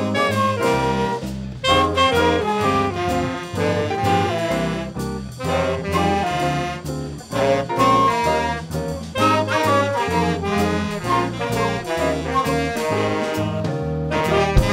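A small jazz band playing live, horns carrying the melody over a bass line and a steady beat.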